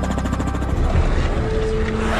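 Helicopter rotor beating steadily, with background music underneath.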